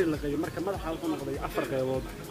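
A man's voice speaking; no sound other than speech stands out.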